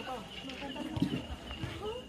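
Faint voices of volleyball players and onlookers talking among themselves, with a short knock about a second in.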